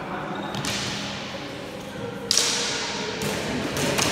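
Training sabres for heavy cavalry sword sparring, one sharp clack of blade on blade a little past halfway, the loudest sound, with lighter knocks and footwork around it. Everything echoes in the large hall.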